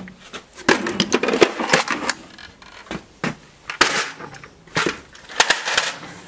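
Loose metal sockets and hex keys clinking and clattering against each other in a tool-chest drawer as they are shifted about by hand, in several short bursts of knocks with quieter gaps between.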